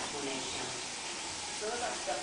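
Faint voices in the room, heard briefly near the start and again near the end, over a steady hiss.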